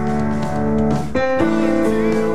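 Upright piano playing held chords; a new chord is struck a little past halfway through and rings on.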